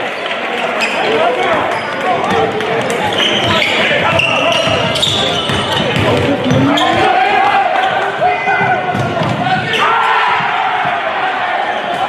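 Basketball game sound in a large gym: a ball dribbling on the hardwood and sneakers squeaking, under continuous voices of players and spectators.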